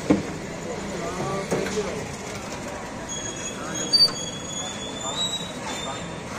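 Indistinct background voices over steady street noise, with a sharp clink just after the start and another about four seconds in, and a thin high squeal from about three seconds in that fades out before the end.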